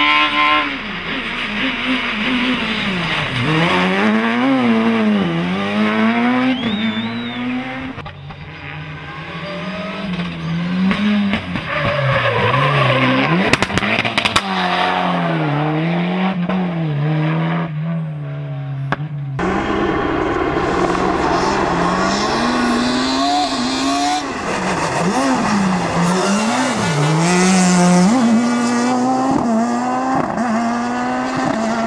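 Rally car engines revving hard and falling back through quick gear changes as the cars drive a stage, over several separate passes. The sound changes abruptly about eight and nineteen seconds in.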